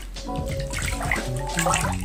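Water in a filled bathtub sloshing and splashing as it is stirred, with a louder swell of splashing near the end. Background music plays underneath.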